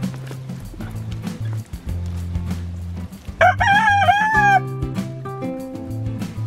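A rooster crows once, a short wavering call a little past halfway through, over steady background music with sustained low notes.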